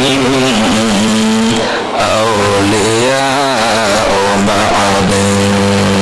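A man's voice chanting through a microphone and loudspeaker, drawing out long notes that waver and glide in pitch, then holding one long steady note near the end.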